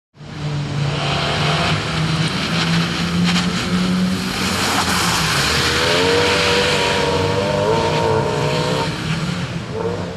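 Fiat Seicento rally car's engine running hard through a corner, with the tyres squealing in a wavering note from about halfway in for some three seconds. The sound cuts in abruptly at the start.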